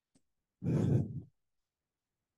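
A person's sigh close to the microphone: one short breath out lasting under a second.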